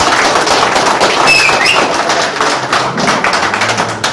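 A group of people applauding: many hands clapping at once in a dense patter that thins out a little near the end.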